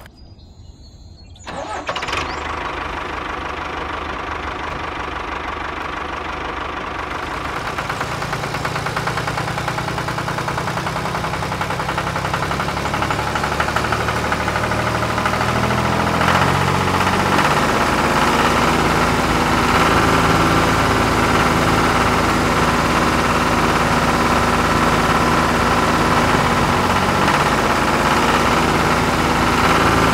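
Small engine of a miniature model tractor starting about a second and a half in, then running steadily with a fast, even rattle, growing louder around the middle.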